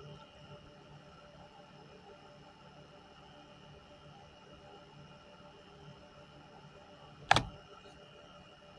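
Faint room tone with a faint steady high whine, broken once about seven seconds in by a single sharp click.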